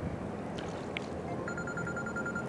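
Steady outdoor background noise, joined about one and a half seconds in by a rapid trilling electronic beep like a phone ringing.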